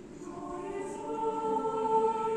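A choir singing long held chords, coming in just after the start and swelling in loudness.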